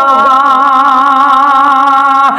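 A man's voice holding one long sung note, with a slight waver.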